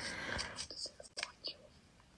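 Quiet, breathy whispered voice for about the first half second, then a few soft clicks and short breaths, falling away near the end.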